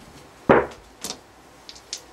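Casino chips and the on/off puck being handled on a felt-covered craps table: a sharp clack about half a second in, a lighter one about a second in, and a few faint ticks near the end.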